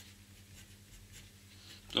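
Pen scratching on paper in a few short, faint strokes while a small circuit symbol is drawn, over a low steady hum.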